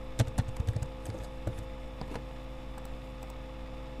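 Computer keyboard keys clicking in a quick run of taps in the first second, then a couple of single taps, over a steady electrical hum.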